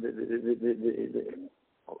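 A man's voice holding a long, wavering hum-like vowel for about a second and a half, then breaking off into a brief pause.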